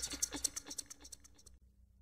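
A rapid run of scratchy clicks, about ten a second, dying away and stopping about a second and a half in.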